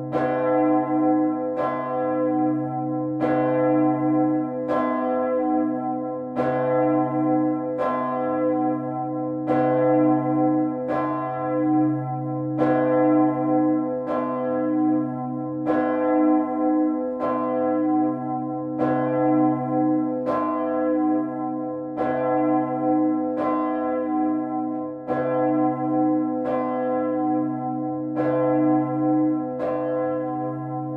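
Swinging bronze church bells ringing together in a full peal, struck about every 0.8 s, each stroke ringing on over a steady low hum.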